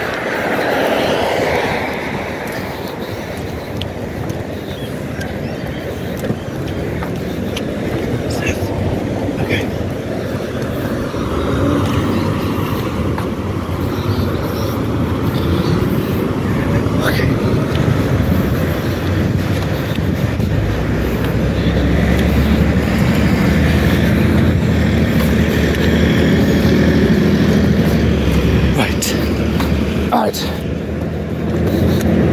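Road traffic of cars and trucks passing close by on a busy road, a continuous rushing noise. A deeper rumble builds in the second half and stays to the end.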